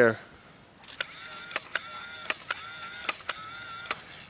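A battery-powered bubble maker's small electric motor starting up about a second in and then whirring with a steady high hum, with a string of sharp clicks over it.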